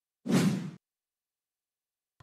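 A single short whoosh sound effect, about half a second long, of the kind used as a transition between news stories.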